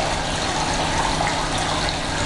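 Steady rush of running water in a pumped aquaponics system, water circulating through the pipes and tanks.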